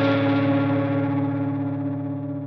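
Electric guitar played through distortion and effects, a held chord ringing out and slowly fading.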